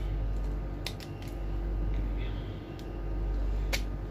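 Several short sharp clicks from the hard plastic housing of a battery LED lamp and its wiring being handled and trimmed, the loudest near the end, over a steady low hum.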